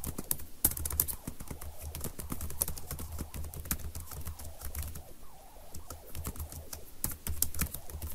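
Typing on a computer keyboard: irregular runs of key clicks, with a low hum coming and going underneath.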